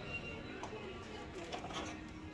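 Faint background music over the low room noise of a busy shop.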